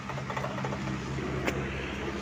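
Motorcycle engine idling with a steady low hum, and a single sharp click about a second and a half in.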